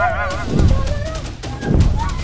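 Cartoon-style comedy sound effect over background music: a wobbling, honk-like tone that dies away in the first half second, with drum beats about a second apart.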